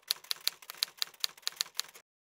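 Typewriter keystrokes, a rapid even run of sharp key clicks at about five a second, used as a sound effect for text typing onto the screen; they cut off abruptly.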